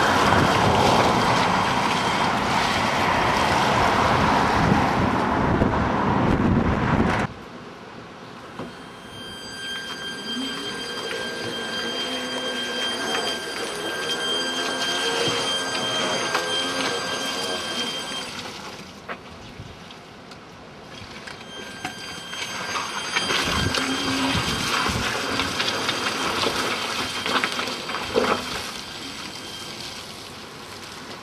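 A home-converted electric car's drive motor whines at a steady high pitch as the car moves over the lawn. The whine fades out for a few seconds in the middle and then returns. Before it, a loud rush of wind on the microphone stops abruptly about seven seconds in.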